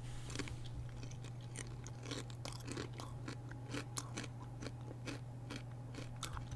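Faint, irregular small clicks and crunches close to the microphone, coming every fraction of a second, over a steady low electrical hum.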